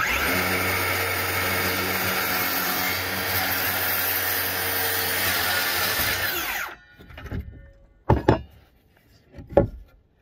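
A cordless circular saw runs and cuts across a 2x4 for about six and a half seconds with a steady motor whine, then cuts off suddenly. A few short knocks follow.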